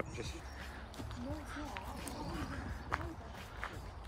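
Faint voices talking in the background over a steady low outdoor rumble, with a couple of light clicks in the last second or so.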